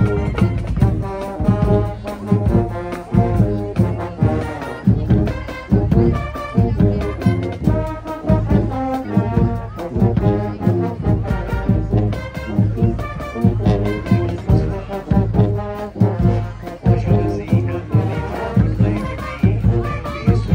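Marching band playing a brass tune, the sousaphones close by giving a heavy low bass line, with a steady drum beat underneath.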